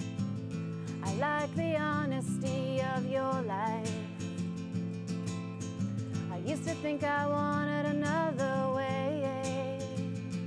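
An acoustic guitar picked steadily through an instrumental passage of a song. A wavering, gliding melody line rises above it twice, about a second in and again past the middle.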